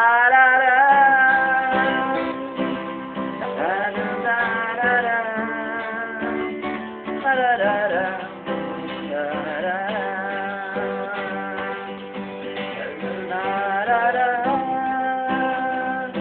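Acoustic guitar strummed under a man's singing voice, which holds long, drawn-out notes that slide between pitches.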